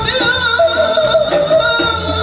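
Live Bukharian wedding band music: a singer's ornamented, wavering held notes over a steady band backing with frame drums.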